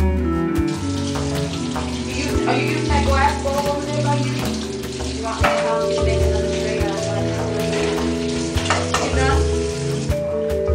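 Background music over kitchen sounds: a steady hiss comes in just under a second in, with scattered clinks and clatter of pans, dishes and utensils.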